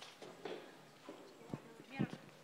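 Faint footsteps of shoes on a hard floor, a few separate knocks, with low murmured voices.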